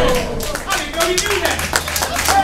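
Audience clapping in quick, scattered claps, with a few voices calling out over it.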